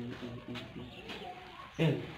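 A bird cooing in a low, repeated call several times, then a man's short "eh" near the end.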